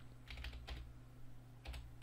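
A few faint keystrokes on a computer keyboard as a command is typed out letter by letter.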